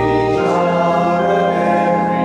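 Church organ playing sustained chords, the chord changing about half a second in, with the deep bass note dropping out.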